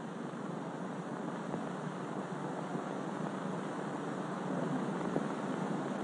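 Steady hiss of an old 1940s film soundtrack, even throughout, with no distinct sound events.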